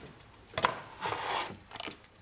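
Papers being handled and slid across a counter through a hatch: a sharp tap about half a second in, then a rubbing, rustling scrape, and two short scrapes near the end.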